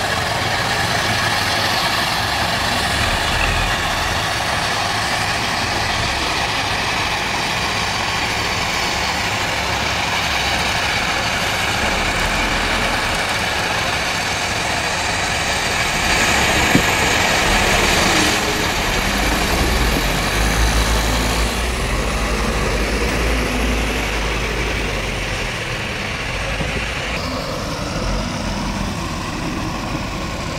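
Diesel engines of a backhoe loader and trucks running steadily, with a single sharp knock about halfway through.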